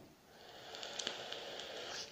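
A drag on a Geekvape Athena mechanical box mod: a soft, airy hiss of air drawn through the atomizer that builds over the second half, with a few faint crackles.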